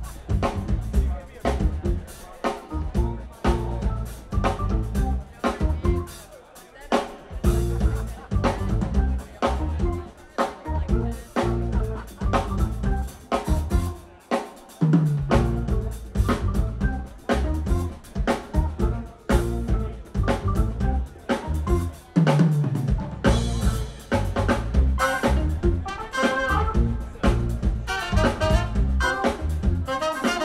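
Live funk band playing a drum-and-bass-driven groove in C, with a drum kit and electric bass and guitars. Trumpet and saxophone come in with a horn line near the end.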